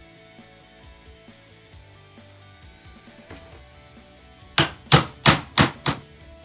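Hammer driving a nail into a weathered wooden fence-paling board: five quick blows about a third of a second apart near the end, over soft background music.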